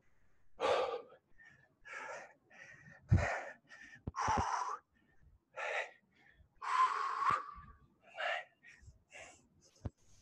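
A man breathing hard in short, gasping breaths, roughly one a second, from the exertion of squatting with a barbell across his shoulders.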